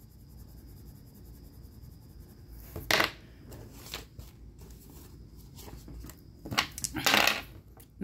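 A pair of dice rolled onto a hard tabletop, clattering in a quick run of clicks near the end. A single short sharp sound about three seconds in, as paper dollar bills are laid down.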